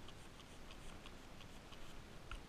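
Faint light ticking and rustling, about four soft ticks a second, from a plastic-sleeved hand and spray bottle working over a goat kid's coat.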